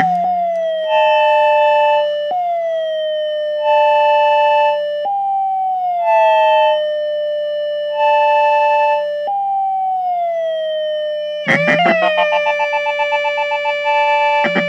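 Ciat-Lonbarde Plumbutter analog synthesizer in a feedback patch where each module clocks the next. A tone slides down in pitch and is retriggered every few seconds, with a higher beep switching on and off about every two seconds over a low steady drone. Near the end it breaks into a rapid stuttering pulse with clicks.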